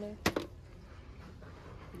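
Two sharp knocks in quick succession, then low, steady background noise.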